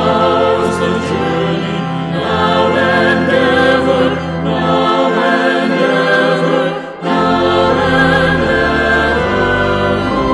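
A small mixed choir of two women and a man singing a hymn with pipe organ accompaniment, with a brief break between phrases about seven seconds in.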